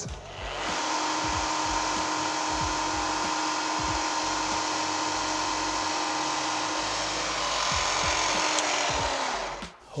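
Manual knee mill's spindle running with an end mill taking a light skim cut across a small metal part held in a vise, a steady whir with a faint hum. It is a small test cut to bring an uneven O-ring groove into spec. The whir starts about half a second in and cuts off just before the end.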